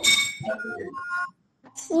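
A child's voice chanting Zhuyin syllables over a video call: held, sung-out vowel sounds, then 'wu' near the end. A bright, ringing clink sounds right at the start.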